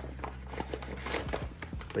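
Small silicone whisk stirring flour into lumps of half-melted butter in a metal saucepan: soft, irregular scratching and light ticks against the pan.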